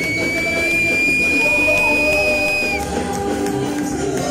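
Live worship band music: electric bass and keyboard playing through the hall's PA. A high, steady whistle-like tone sits over it for nearly three seconds and stops a little before the end.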